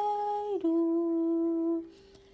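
A woman's solo voice holding the drawn-out last note of a chanted prayer line, close to humming. The pitch steps down once about half a second in, holds steady, then fades out shortly before two seconds.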